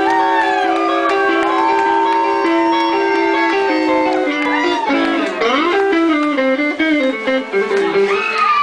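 Electric guitar played live, opening a blues number: long held notes with bent notes sliding in pitch, then a run of shorter notes from about halfway.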